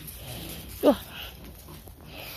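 A Doberman puppy gives one short bark that drops in pitch, a little under a second in.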